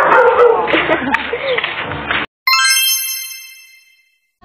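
Laughter and chatter cut off abruptly, then a bright, ringing chime sound effect starts sharply and fades out over about a second and a half, marking an edit transition.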